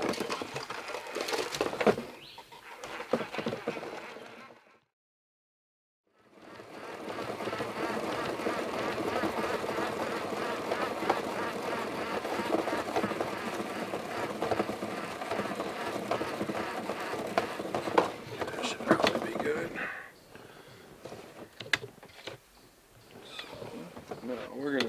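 Level-wind trolling reel cranked steadily by hand, winding 20-pound mono backing line onto the spool. The sound cuts out for about a second and a half about five seconds in, runs on steadily until about twenty seconds in, then gets quieter.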